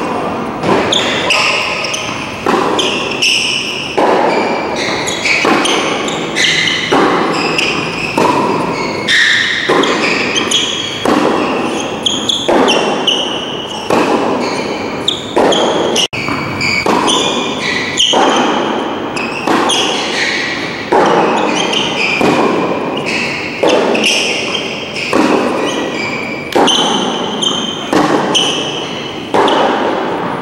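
Tennis ball struck by rackets and bouncing on a hard court during a rally, each hit echoing in a large indoor hall, about one sharp strike a second.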